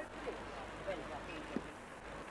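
Faint, indistinct talking from a few people over steady background hiss and hum; the low hum cuts out briefly near the end.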